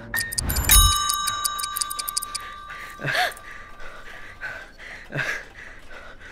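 A single bright metallic chime struck about a second in, with a low thump under it; its clear ringing tones fade away over the next few seconds. Two brief soft sounds follow later.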